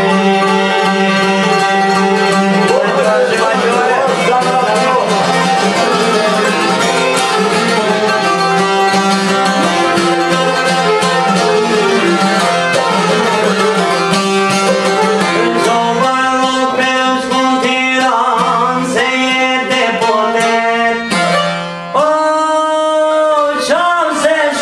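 Albanian folk music played live on a long-necked plucked lute, with a steady low drone under the melody and a man singing over it. The playing thins out briefly near the end, then carries on.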